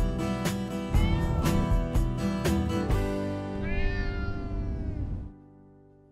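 Outro music with a steady beat, with a cat meowing over it about a second in and again in a long falling meow near four seconds. The music stops suddenly about five seconds in.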